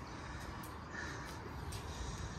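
Quiet outdoor background noise with a faint, short call about a second in.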